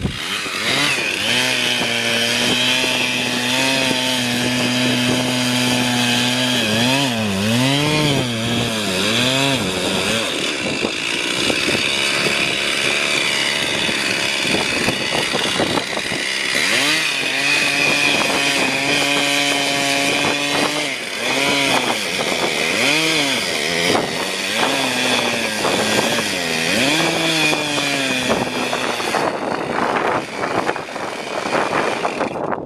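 Two-stroke gasoline chainsaw cutting a log. It runs at a steady pitch for long stretches, and in two spells, about a quarter of the way in and again in the second half, its pitch rises and falls several times over.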